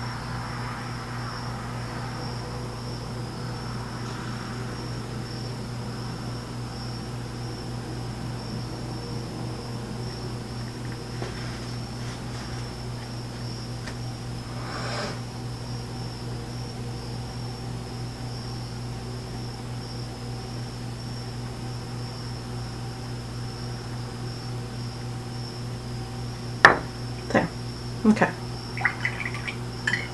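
Steady low electrical hum with a faint, even high-pitched whine over it. Several sharp clicks and knocks come in the last few seconds.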